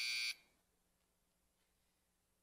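A steady electronic buzzer tone that cuts off abruptly about a third of a second in, followed by near silence.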